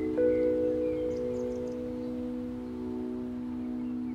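A closing chord held on a Hammond organ: one more note joins just after the start, then the chord sustains steadily without fading.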